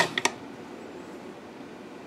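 Quiet room tone with a faint steady hiss, broken only by a couple of faint clicks just after the start.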